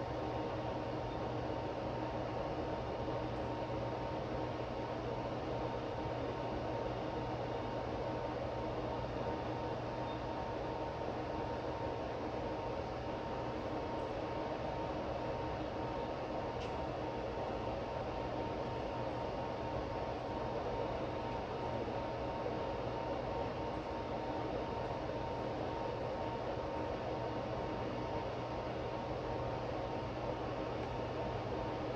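Steady, unbroken noise from the cooling fans of lab test instruments, with a low hum and a faint high steady tone running through it.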